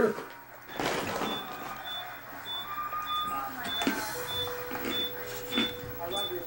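An EMF meter beeping: short, high-pitched electronic beeps about every 0.6 s, starting about a second in, which ghost hunters take to signal a field reading. A steady lower tone joins about four seconds in.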